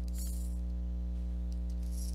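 A steady, unchanging low hum with a ladder of even overtones. Two brief faint hisses come just after the start and again near the end.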